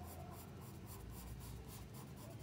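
Faint scratching of a graphite pencil on paper, drawn in quick, short repeated strokes while sketching a line.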